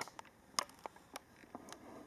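Handling noise: about six light clicks and taps, the sharpest right at the start, against faint background hiss.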